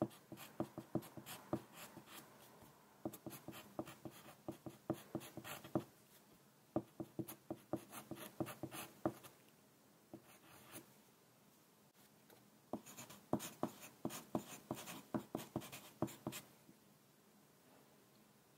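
Wooden pencil writing on a sheet of paper: runs of quick, scratchy strokes with short pauses between them, and a longer pause about twelve seconds in.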